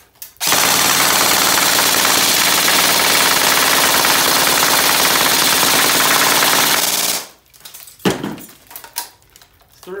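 Zion Arms PW9 Carbine Mod1 airsoft electric gun (AEG) firing full auto in one unbroken burst of about seven seconds, stopping as the mid-cap magazine runs empty. A few sharp knocks follow in the pause, and firing starts again at the very end.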